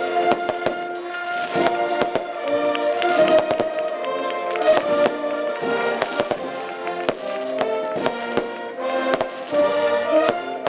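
Brass band music with fireworks going off over it: many sharp bangs and cracks, several a second at times, throughout.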